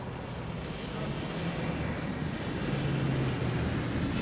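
Mercedes-Benz taxi driving slowly along a road: a steady low engine hum with tyre and outdoor wind noise, growing a little louder in the second half.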